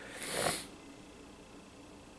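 A person's short, audible breath: a hiss with no pitch that swells and stops within the first second.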